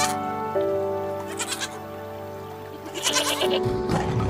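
Goat bleating twice, about a second and a half in and again after three seconds, over background music with long held tones.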